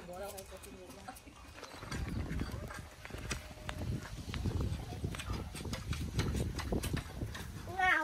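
Footsteps walking across a packed-earth and concrete yard: an irregular run of soft steps over a low rumble, starting about two seconds in.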